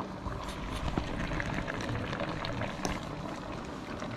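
Moqueca stew of coconut milk and dendê oil simmering in a clay pot: small scattered bubbling pops over a steady low hiss.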